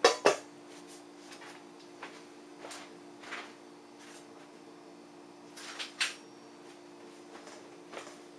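A clear plastic food processor lid set down in a stainless steel mixing bowl: two sharp clacks at the start, then a few lighter knocks and clicks.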